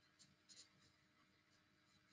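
Near silence: the low hiss of an open call line, with a few very faint short ticks about half a second in.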